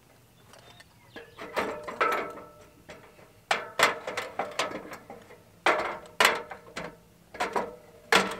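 Aluminium extension ladder clanking and rattling as someone climbs it with a nail gun in hand: a series of sharp metallic knocks with a short ring, coming in clusters every second or two.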